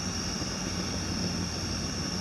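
Gas fire pit flame burning with a steady rushing hiss, under a steady high-pitched drone of night insects.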